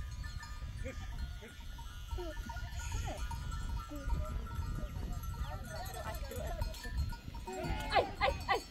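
A herd of goats bleating, many short overlapping calls that grow thicker near the end, over a low rumble.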